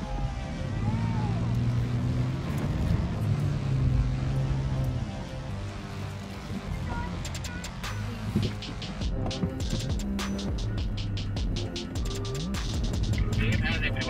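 Music playing over the running of an off-road vehicle driving on sand, with a run of sharp clicks in the second half.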